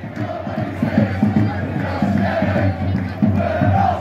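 Large crowd of football supporters chanting and shouting together, a dense mass of voices with sung, drawn-out notes.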